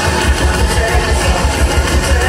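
Drum and bass (neurofunk) DJ set played loud over a club sound system, heard from within the crowd. A heavy sub-bass line comes in about a quarter of a second in and pulses on.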